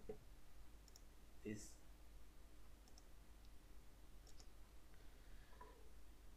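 Near silence with a few faint, short clicks scattered through it, the clearest about a second and a half in.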